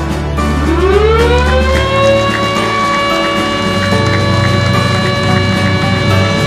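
Ceremonial siren sounding as the inauguration button is pressed, marking the official opening: it winds up in pitch over about two seconds, then holds one steady tone, with music under it.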